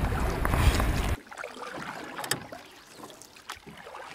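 Wind and sea water rushing loudly over an action camera's microphone, cutting off suddenly about a second in to a much fainter wash of water with scattered small crackles and drips.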